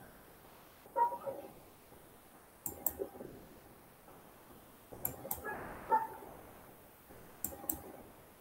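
Faint computer mouse and keyboard clicks in four short clusters, about two seconds apart, as the screen is switched.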